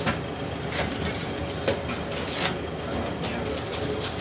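Busy city ambience: a steady low rumble with several sharp clacks and knocks scattered through it, the strongest just at the start and a little before the middle.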